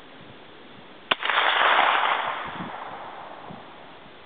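A single 9mm gunshot: one sharp crack about a second in, followed by a loud rough tail that fades out over about two seconds.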